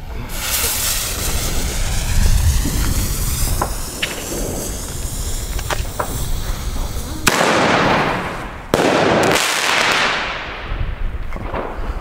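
A Weco Fantastic 4 single-shot shell tube firing: several seconds of low noise, then about seven seconds in a sudden loud bang as the shell goes off, and about a second and a half later a second loud bang as it bursts, fading away over a couple of seconds.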